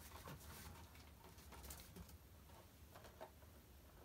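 Faint rustling and light taps of cardboard packaging as a hand rummages in a shipping carton and lifts out a boxed vinyl figure.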